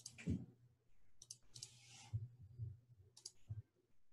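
Faint scattered clicks and a soft low knock, over a low steady hum.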